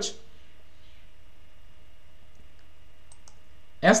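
Quiet, steady room tone with a few faint, short clicks: one pair a little over two seconds in and a small cluster around three seconds in.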